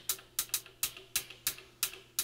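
Short, crisp hi-hat hits from an Elektron Digitone FM synthesizer, about eight in two seconds at a quick, slightly uneven pace, over a faint steady low tone.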